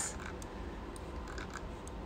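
A few faint clicks from a computer mouse and keyboard, over a low steady hum.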